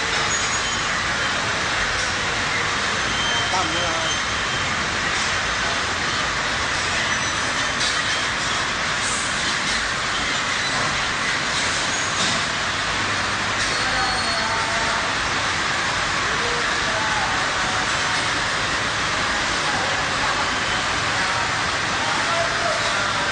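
A steady din of many voices talking over one another, with no single voice standing out.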